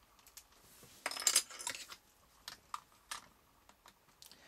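Hard plastic toy parts clicking and rattling as the shin pieces are fitted onto the legs of the Ultra Raker robot figure, with a busier run of clicks about a second in and a few single clicks after.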